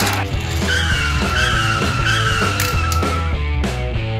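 Background music with a steady beat, overlaid with a car tire-squeal sound effect: a wavering high screech that starts about a second in and lasts about two and a half seconds.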